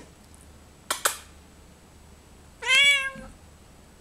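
Bengal cat giving a single meow of about half a second, a little under three seconds in. A brief double click comes about a second in.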